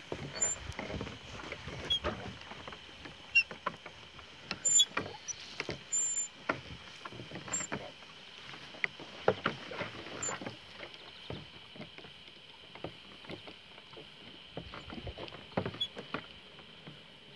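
Garden pressure sprayer being worked over potato plants: irregular clicks, knocks and sloshing as the lance is moved from plant to plant, over a faint steady hiss.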